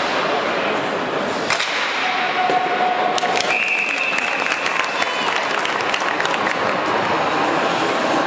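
Ice hockey game in a rink: a steady din of crowd voices and skates on ice, broken by sharp cracks of sticks and puck against the boards. About two seconds in a steady tone is held for over a second, then a higher steady tone follows for over a second.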